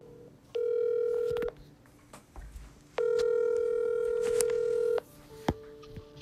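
Telephone ringback tone heard over a recorded phone call while the other end rings: a steady pitched tone in two pulses, about one second and then about two seconds long, with a click near the end.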